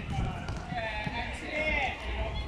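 Distant children's high voices calling out across an open sports field, over a low steady rumble.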